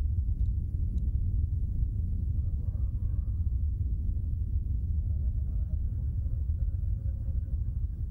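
A steady deep rumble with no distinct events, with a faint murmur in the middle.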